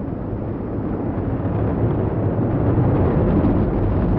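Delta II first stage climbing under its main engine and six ground-lit solid rocket motors: a steady, deep rocket rumble with no breaks, growing slightly louder over the few seconds.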